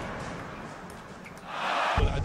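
Music fading away, then a short swell of rushing noise in the last half second.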